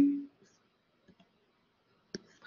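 A sharp computer click at the start with a brief low hum trailing after it, then two faint clicks about a second later, from a student working an online quiz form at the computer.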